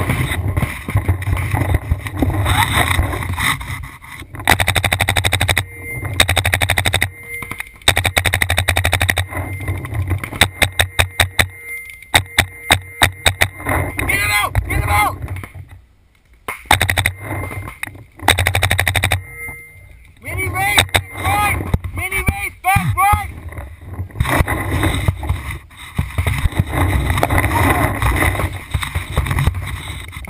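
Paintball markers firing in rapid bursts of shots, with shouting voices in the pauses between bursts.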